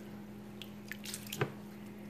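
A ceramic soup spoon stirring a bowl of dark red liquid, with a few short splashes and drips, over a steady low hum.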